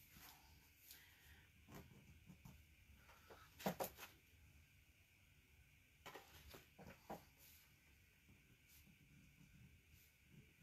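Near silence: faint scattered taps and scratches of a paint pen drawing on canvas, with a couple of sharper clicks about four seconds in.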